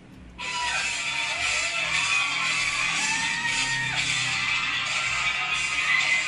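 Live pop band music with electric guitar and drums, starting suddenly about half a second in; a long held note, most likely sung, rings out partway through.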